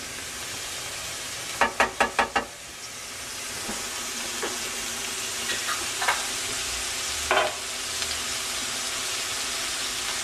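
Celery and onions sizzling steadily in olive oil in a skillet, the sizzle growing a little louder about three seconds in. Five quick sharp taps come about a second and a half in, and a couple of fainter knocks follow later.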